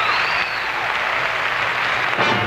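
Audience applauding, with a high whistle rising and falling near the start.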